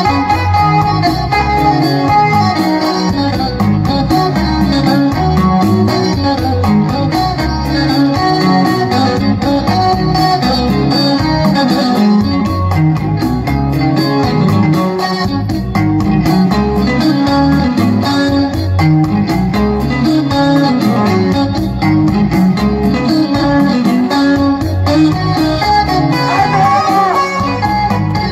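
Loud amplified zikiri concert music led by a plucked guitar line over a pulsing bass, played steadily throughout.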